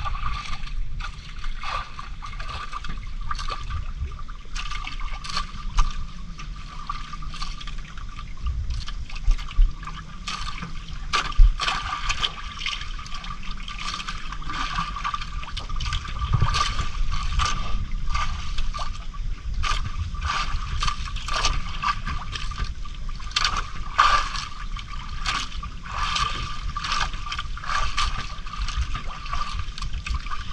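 Sea water lapping and splashing irregularly against the hull of a drifting outrigger boat, with a steady high tone running under it.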